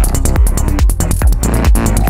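Dark progressive psytrance from a DJ set: a steady four-on-the-floor kick drum a little over twice a second, with a rolling bassline between the kicks and ticking hi-hats above.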